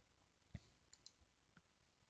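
Near silence with one faint computer mouse click about half a second in, then a few fainter ticks.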